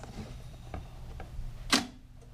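A few light clicks and one sharper, louder click near the end as a cardboard reel-to-reel tape box is handled and set down in front of the tape deck, over a steady low hum.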